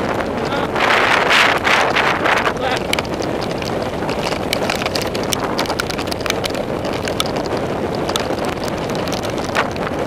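Mountain bike ridden fast over a rough, wet dirt trail, heard on a GoPro: a steady rush of wind on the microphone with constant rattling clicks and knocks from the bike and tyres over rocks and ruts. A louder rush of noise comes about one to three seconds in.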